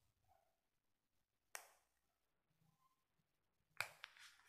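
Near silence: room tone, with two faint brief clicks, one about a second and a half in and one near the end.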